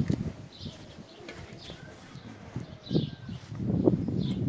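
Faint bird calls, with a soft knock about three seconds in.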